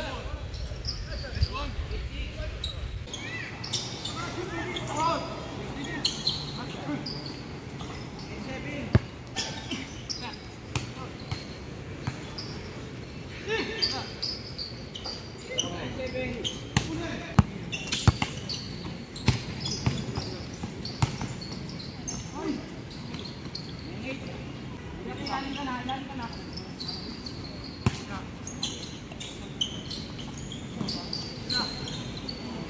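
A basketball bouncing on a hard outdoor court during play, with irregular sharp thuds of the ball scattered throughout.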